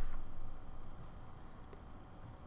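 A few faint, sharp clicks at a computer desk over quiet room tone.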